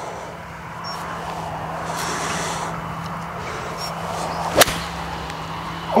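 Nine iron striking a golf ball from a bad lie in the rough, one sharp crack about four and a half seconds in, digging out a big chunk of turf. Wind noise and a steady low hum run underneath.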